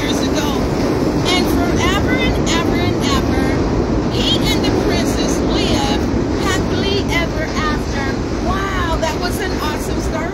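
Busy city street din: a steady rumble of traffic with many people talking nearby, no single voice standing out.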